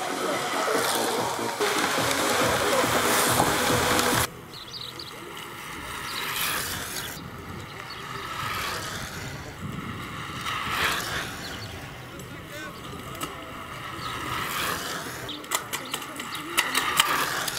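A loud, steady rush of noise that cuts off suddenly about four seconds in. After it comes a quieter outdoor background with faint, distant voices.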